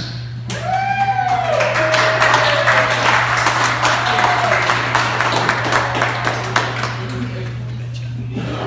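Small crowd clapping in a hall, with a drawn-out rising-and-falling cheer about half a second in and a shorter one about four seconds in.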